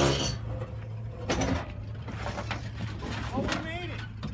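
Toyota pickup's engine running steadily at low revs while the truck crawls over a rock ledge, with a few sharp clicks and knocks from the truck working over the rock.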